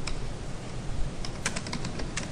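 Computer keyboard keystrokes: one click at the start, then a quick run of about six keys around a second and a half in.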